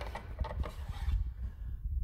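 Faint handling noise from a handheld camera: a low rumble with a few light clicks.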